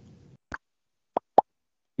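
A faint click, then two short, sharp pops close to the microphone, a fifth of a second apart.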